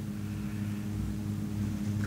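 Steady low electrical hum made of several even tones, with faint hiss.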